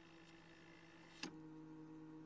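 Faint cassette recorder running: a low steady hum with tape hiss, and a single click a little past halfway, after which the hum is slightly louder.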